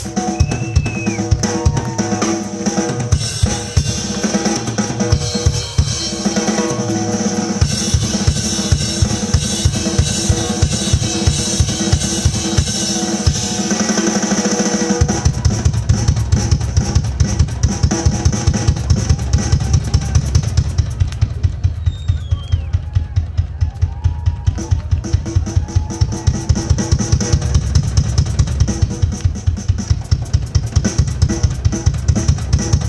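Live drum solo on a Pearl acoustic drum kit: fast bass drum, snare and cymbal playing. About halfway through, the bass drum settles into a rapid, steady stream of strokes under the rest of the kit.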